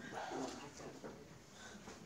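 Faint classroom background with a few quiet, indistinct voices.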